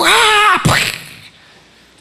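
A man's voice through a microphone making a car-skid sound effect: a loud, high, wavering squeal for about half a second, then a short hissing burst that dies away.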